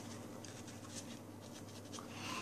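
Faint rustling and small soft crinkles of a paper napkin being rubbed over the mouth and hands, over a low steady room hum.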